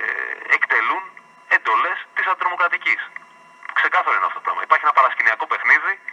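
Speech only: a man talking over a telephone line, heard through a radio broadcast, with short pauses between phrases.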